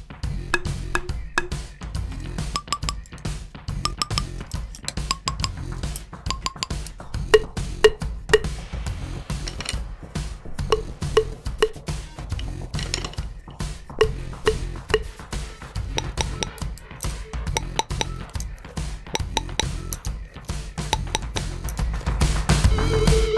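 Vic Firth 5B drumsticks, first a wooden American Classic and then a carbon-fibre Titan, tapped over and over against a stone in a pitch test. Each tap is a sharp click with a short ring that shows the stick's pitch.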